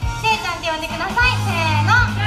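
A young woman talking into a handheld microphone through a PA, over background music with a steady low beat.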